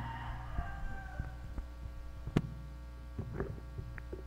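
Steady low electrical hum from a church sound system between speakers, with one sharp click a little past the middle and a few faint ticks.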